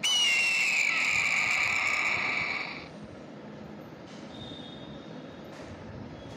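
Recorded eagle call: one long, high scream that falls slightly in pitch and lasts about three seconds, then fades out.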